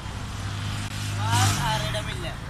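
A motor vehicle's engine running with a steady low hum that swells loudest and rises a little about one and a half seconds in as it passes close, with voices talking over it.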